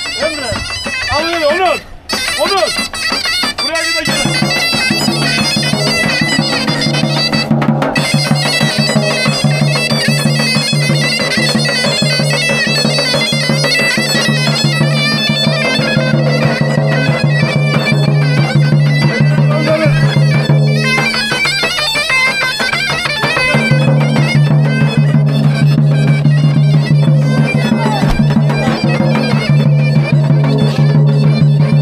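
Bagpipe music: a reedy melody over a steady low drone. It comes in about four seconds in and runs on, with the drone dropping out briefly a little past the middle.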